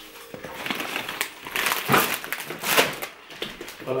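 Crinkly plastic packaging being handled, with irregular crackling and rustling as groceries are moved.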